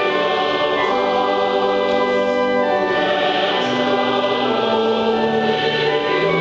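Mixed choir of men's and women's voices singing a slow hymn in long, held chords that change about once a second.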